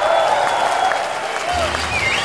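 A concert crowd applauding and cheering, with a few scattered shouts, just after a rock song has ended.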